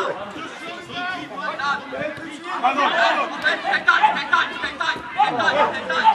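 Several voices talking and calling out at once, with no clear words, from people at a football match.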